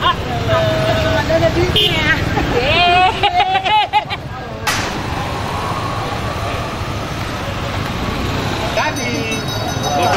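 Street traffic with motorbike engines running over a steady road rumble, with voices of a walking crowd calling out over it for the first few seconds. After an abrupt cut a little before halfway, only the steady traffic noise remains, with voices again near the end.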